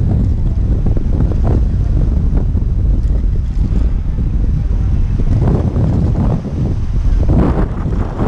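Wind buffeting the microphone as a loud, steady low rumble, with sea waves washing against the rocks underneath.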